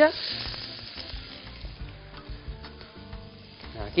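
Chopped onion dropped into hot extra-virgin olive oil in a frying pan, starting a sofrito: a loud sizzle as it hits the oil, settling within about a second into a quieter, steady sizzle.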